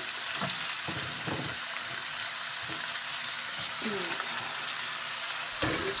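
Chicken, potato, carrot and mushroom in chili sauce sizzling in a frying pan, a steady hiss, with a few light knocks scattered through it.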